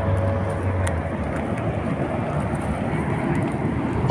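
Steady rush of traffic noise from vehicles on a nearby highway, an even hiss-like roar without distinct passes.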